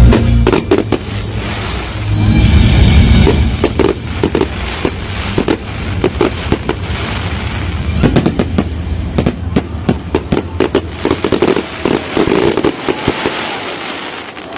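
Fireworks display: aerial shells bursting with a string of sharp bangs and rapid crackling, densest in the second half. Loud music with heavy bass plays under the first few seconds.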